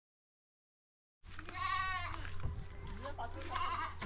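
Dead silence for about the first second, then a goat bleating: one long wavering bleat, and a shorter call near the end.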